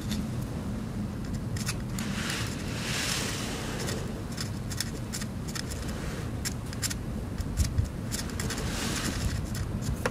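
A small flat-tipped screwdriver scratching and scraping at the components of a USB stick's circuit board. It makes short scratches and clicks, with a longer scrape about two to three seconds in, over a steady low rumble.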